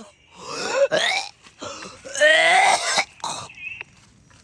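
A person's wordless, strained cries and groans, in two longer bursts and a short one near the end, with quiet gaps between.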